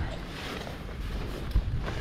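Handling sounds of a backpack being unclipped and taken off, with a short knock about one and a half seconds in, over steady wind noise on the microphone.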